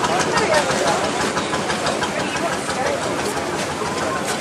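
Background murmur of voices from a crowd, with a motorcycle engine idling steadily among them.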